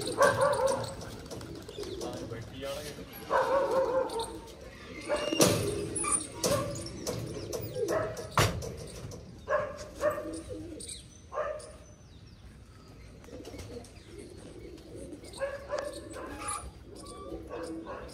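Domestic pigeons cooing in short bursts, with a few sharp clicks and knocks in between.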